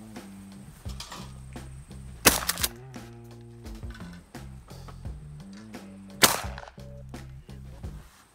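Two shotgun shots at clay targets, about four seconds apart, each a sharp crack with a short tail. A background music track with a steady bass line plays underneath and stops abruptly at the end.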